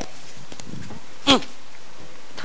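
A single short yelp, falling steeply in pitch, about a second in, over a steady background hiss.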